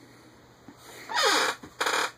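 Breath sounds close to the microphone: a short sigh falling in pitch about a second in, then a quick, hissy breath in near the end.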